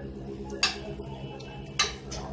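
Two sharp clicks a little over a second apart, over a steady low hum, as a soldering iron and a small phone circuit board are handled.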